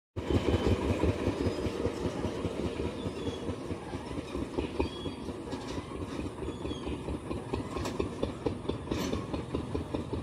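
A train running past on the track, a continuous rumble and rattle of wheels and cars.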